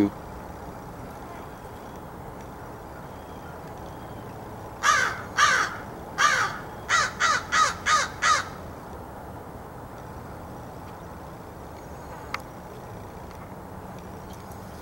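Crow cawing: a run of about eight caws over three or four seconds, two spaced apart and then six in quick succession.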